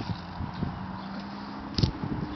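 A single sharp clack near the end: a plastic toy fishing rod and casting plug knocking on a concrete driveway, with a few lighter taps before it and a faint steady low hum underneath.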